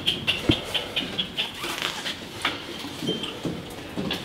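Pigeon squabs peeping: a run of short, high squeaks about four a second, thinning to a few scattered ones after the first second or so. Light knocks and scuffs sound among them.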